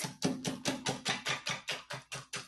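Coil whisk beating egg yolks into whipped egg whites on a plate, the wire clicking against the plate in quick, even strokes about five times a second.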